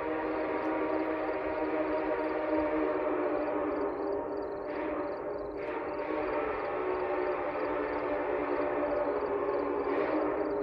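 Locomotive air horn sounding one long, steady chord of several notes, with a brief dip about halfway through. A faint, quick, regular ringing sits above it, fitting the active grade-crossing bell.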